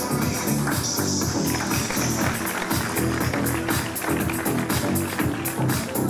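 Music with a steady, fast beat and a pitched bass line.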